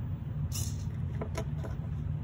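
Light handling noises from a small 3D-printed plastic spring cannon and its micro servo: a short rustle about half a second in, then a few light clicks, over a steady low background hum.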